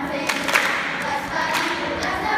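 Children's choir singing together, with a few sharp hand claps of body percussion cutting in, the loudest about half a second in.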